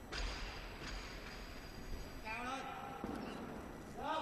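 Barbell clean in a quiet arena: a voice shouts about two seconds in as the bar is pulled, followed just after by a short knock as the bar is caught.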